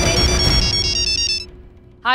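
Mobile phone ringtone for an incoming call: a quick electronic melody of short high beeps stepping between a few pitches, over background music. Both stop suddenly about one and a half seconds in.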